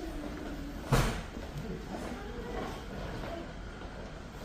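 One loud, sharp thump about a second in, over a steady murmur of faint, indistinct voices.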